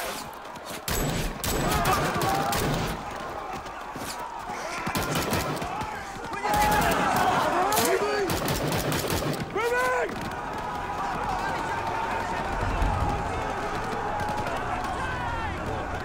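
Film battle soundtrack: bursts of rifle and machine-gun fire in rapid volleys, densest early on and again from about six to ten seconds in, thinning afterwards, with soldiers shouting under the shots.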